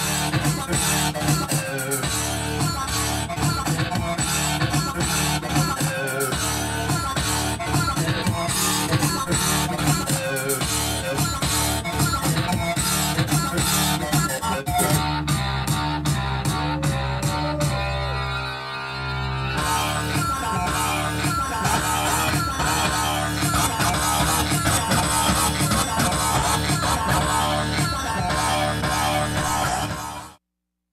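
Music from a DJ set on turntables: a guitar-heavy, rock-style track playing loud and continuous. About halfway through, the treble drops away for several seconds before the full sound returns.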